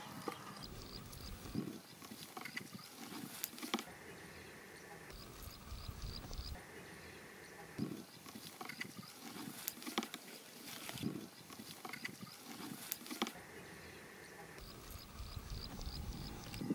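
Outdoor cooking over a wood fire: an irregular low rumble of wind on the microphone, scattered sharp crackles and clicks, and faint repeated high chirps.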